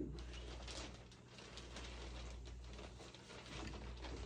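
Faint, irregular rustling and scratching as a cat grapples and claws at a string wand toy on carpet, over a low steady room hum.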